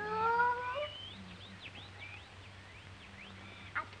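A child's voice draws out a long rising "you". A string of quick, high bird chirps follows, lasting about two seconds.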